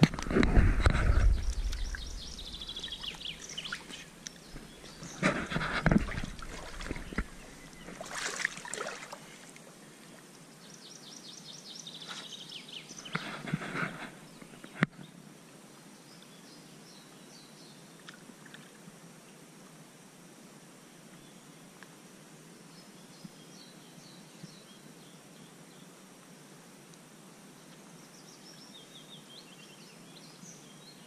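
Water splashing and sloshing around a large northern pike as it is held in shallow water and released, in several bursts over the first fifteen seconds. Small birds sing repeated trills throughout, and the second half is only faint birdsong over quiet outdoor background.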